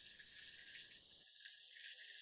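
Near silence, with a faint steady fizz from bubbling piranha solution (sulfuric acid and hydrogen peroxide) in a glass beaker.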